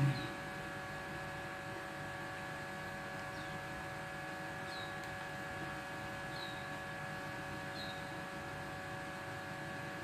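A steady background hum of several constant tones, with about five faint, brief high chirps spread through it.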